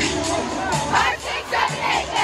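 A team of young cheerleaders shouting together in a huddle, a group cheer that peaks about a second in, with arena music playing underneath.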